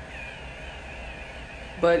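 Handheld electric facial cleansing brush running against the cheek: a faint, thin whine that wavers slightly in pitch.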